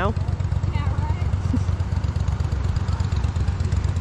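Steady low rumble of a motorboat engine running nearby on the water, with a faint distant voice about a second in.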